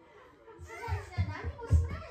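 Mostly speech: a person's voice talking softly, with a few dull low thumps about a second in.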